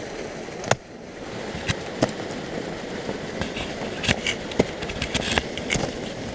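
Ice axe picks and crampon points striking frozen waterfall ice: a string of sharp hits, closer together in the second half, over a steady rustling noise.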